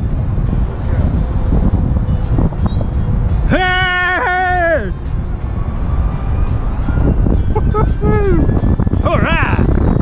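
Wind buffeting a helmet-mounted camera's microphone during a fast zip-line descent, a constant rough rumble. Over it the rider lets out drawn-out whooping yells that rise and fall in pitch: two long ones around the middle and a few shorter ones near the end.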